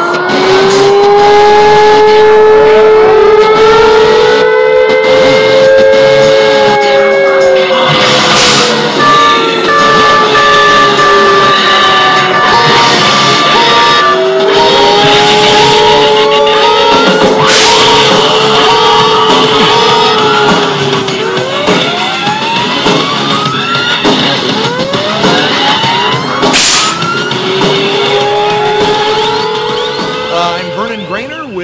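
Electronic music with long, swooping siren-like tones and a run of beeps, over which the Ponginator's compressed-air ping-pong ball guns fire three loud blasts about nine seconds apart.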